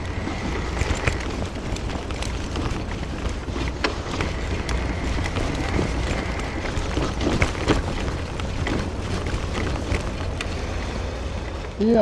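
Steady low wind rumble on the microphone, with scattered faint clicks and ticks.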